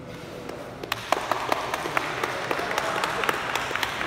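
Audience clapping in a sports hall, building up about a second in into steady applause of many separate claps.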